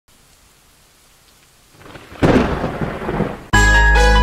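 Faint rain hiss, then a loud thunderclap about two seconds in that rumbles for about a second. Just before the end, a music track with a heavy bass comes in abruptly.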